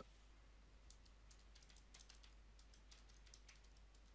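Faint, quick clicks of calculator keys being pressed, many irregular taps starting about half a second in, as a division is keyed in.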